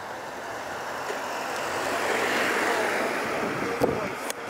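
Road traffic noise: a passing vehicle's tyre and engine hiss swells to a peak about two and a half seconds in, then eases off. A short knock comes just before the end.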